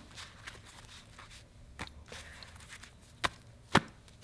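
Tarot cards being handled and set down on a cloth-covered mat: a few light taps, then two sharper taps about half a second apart near the end.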